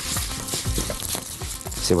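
Vermicelli sizzling as it toasts in melted ghee in a pot, stirred with a spatula that scrapes and rustles through the strands.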